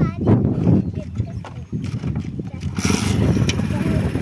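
Motorcycle engine idling with a fast, even low chugging, with people's voices over it; wind buffets the microphone in the last second or so.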